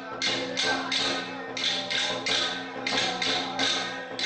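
Traditional Taiwanese temple percussion accompanying a spirit medium's trance: cymbals crashing in a steady rhythm, about three a second in short runs, over low steady ringing tones.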